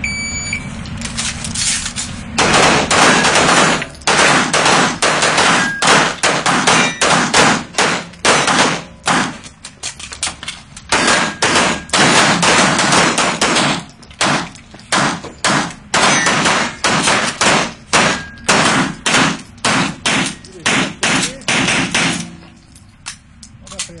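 A short electronic shot-timer beep about half a second in, then rapid strings of pistol shots, often several a second, echoing off the walls of an indoor range, running until about 22 seconds in.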